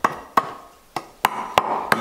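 A machete blade chopping into the end of a peeled eucalyptus hoe handle, about six sharp chops at an uneven pace. The chops cut the notch (the 'garganta') that lets the hoe blade sit tilted for weeding.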